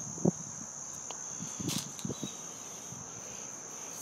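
A steady high-pitched whine hums in the background, with a few faint clicks and soft knocks, the loudest about a quarter of a second in.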